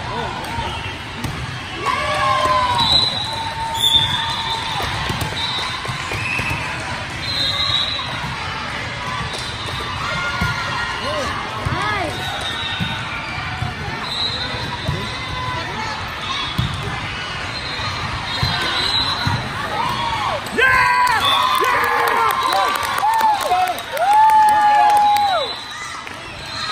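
Indoor volleyball play: the ball being served and struck, with players' and spectators' voices calling out. The calls grow louder and busier for a few seconds near the end.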